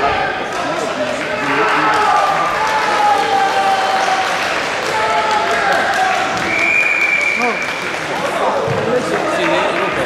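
Indistinct overlapping voices and chatter echoing in a large sports hall, with no clear speech. About two-thirds of the way in, a steady high tone sounds for about a second.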